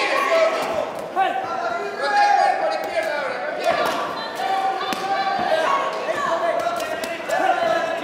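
Men's voices shouting almost continuously, over several short, sharp thuds of gloved punches and kicks landing in a kickboxing exchange.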